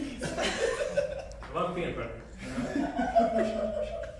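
Chuckling and laughter mixed with wordless vocal sounds, with a longer held vocal tone near the end.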